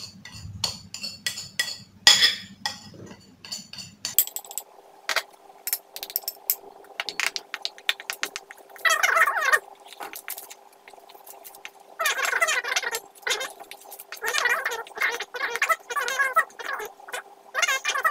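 A few clinks of a ceramic bowl against a stainless steel bowl as flour is tipped in, then a metal spoon stirring and scraping dry flour mix in the steel bowl in short bursts through the second half.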